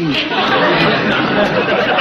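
Studio audience laughing: a dense, steady wash of many voices with no single speaker standing out.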